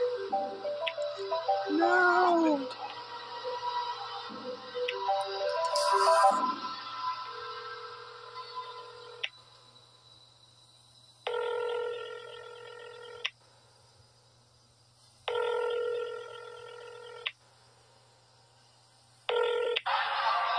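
Tense film-score music with held notes that fades away, followed by a telephone ringing in bursts about two seconds long with two-second gaps, three rings.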